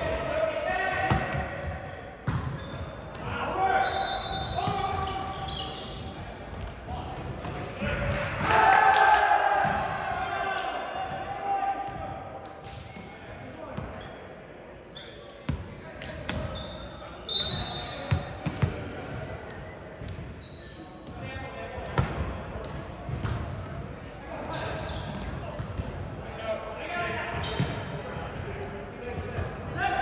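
Indoor volleyball game in a large gymnasium: players' shouts and calls echo around the hall, over the thumps of the ball being hit and bouncing on the hardwood court. The loudest moment is a burst of shouting about eight seconds in.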